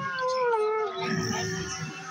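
A long, drawn-out meow-like wail. It slides down in pitch, holds steady and then stops near the end.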